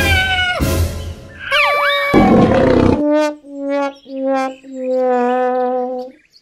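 Cartoon sound effects: two noisy blasts with quick whistle-like glides between them, then a trombone playing four notes stepping down in pitch, the last one held, the comic 'sad trombone' (wah-wah-wah-waaah) gag that marks a mishap.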